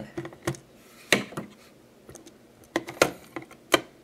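Small precision screwdriver backing out the screws of a small plastic flight-controller case, then the case being handled and pulled apart: a handful of separate sharp clicks and taps, about five in four seconds.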